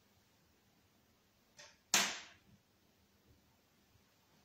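A faint click, then a single sharp knock about two seconds in that dies away over half a second, in an otherwise quiet room.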